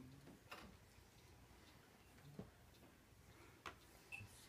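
Near silence: quiet room tone with three faint, irregular clicks.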